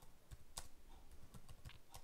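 Faint typing on a computer keyboard: a string of irregular key clicks as a terminal command is typed.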